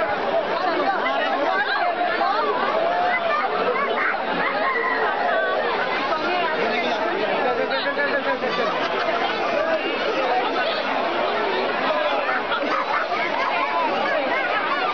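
Crowd chatter: many voices talking and calling at once, overlapping without a break.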